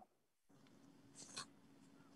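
Near silence: faint low room hum, with one brief soft rustle about a second in.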